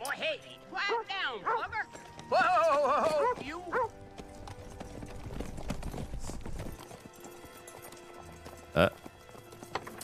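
Film soundtrack of horses: two whinnies in the first four seconds, then hooves clip-clopping under a music score, with a short sharp sound near the end.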